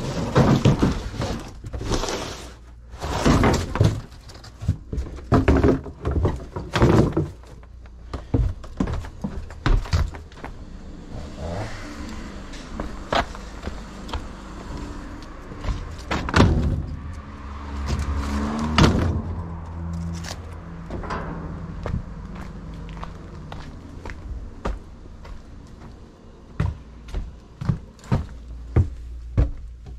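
Footsteps and a run of knocks, thuds and clunks as junk is carried and handled around a steel roll-off dumpster, busiest in the first several seconds, over a steady low rumble.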